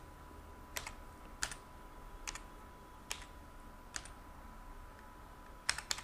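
Computer keyboard keystrokes, single keys pressed one at a time about a second apart, with a quick pair near the end, as numbers are typed into a spreadsheet.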